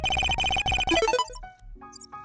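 Electronic logo-intro music: a loud, glitchy, buzzing synth burst for about the first second that fades away, then a low sustained synth tone with short plucked notes over it near the end.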